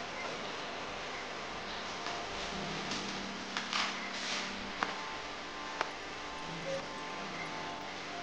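Hands handling a plastic quadcopter frame and propeller over a steady hiss: a brief rustle about halfway through, then two light clicks a second apart. A low hum runs for a couple of seconds mid-way.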